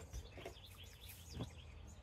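Faint, scattered chirps of small birds over a quiet background, with one soft knock about one and a half seconds in.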